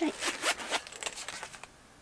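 Handling noise from a small purse and the paper packing being pushed back into it: a quick run of short rustles and clicks that dies away shortly before the end.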